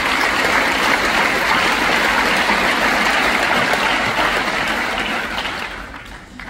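Audience applauding steadily in a large hall, dying away near the end.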